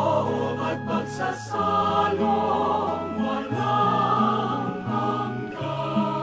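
A choir singing a slow hymn over sustained accompaniment chords, with the bass moving to a new note every second or so.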